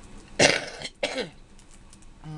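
A woman coughs twice, the first cough the louder: the cough of emphysema, which she says is getting worse.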